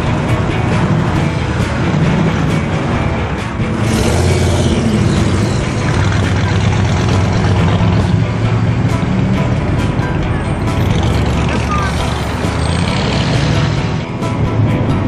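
Engines of classic American cars running as they pull out and drive past, a steady low rumble, with music and voices mixed in.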